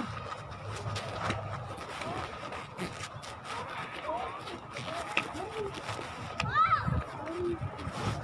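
Scattered voices and a laugh, with a child's higher-pitched call about six and a half seconds in, over rustling and handling noise from a handheld phone.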